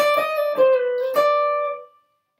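Semi-hollow-body electric guitar with a clean tone, playing a short up-and-down run of single picked notes: the opening of a jazz line over B-flat rhythm changes. The pitch steps down and back up, and the last note rings and fades out near the end.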